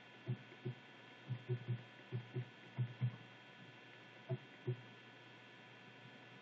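Soft low thumps of fingers pressing the membrane buttons on a Pfaff Creative 1473 sewing machine's control panel, about eleven presses singly and in quick pairs over the first five seconds, over a steady faint electrical hum.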